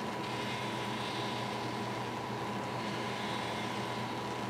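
Steady drone of workshop machinery at a plating tank: a low hum with a thin, unchanging high-pitched tone over it.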